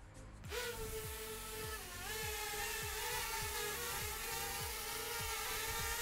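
Xiaomi MITU mini quadcopter's motors and propellers spinning up about half a second in, then holding a steady whine as it lifts off and hovers, with a brief dip in pitch about two seconds in. Background music with a steady beat runs underneath.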